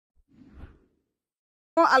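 Near silence with one faint, soft rush of noise about half a second in. A man's voice speaking Spanish cuts in abruptly near the end, already mid-sentence.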